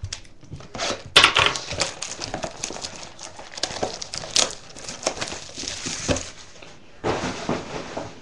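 Plastic shrink-wrap crinkling and tearing as it is stripped off a cardboard box of baseball cards, in a run of uneven crackles and rustles.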